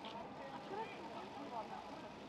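Indistinct chatter of several people talking at once, overlapping voices with no clear words.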